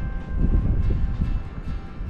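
Wind buffeting the microphone: a loud, uneven low rumble that swells and dips. Faint background music runs under it.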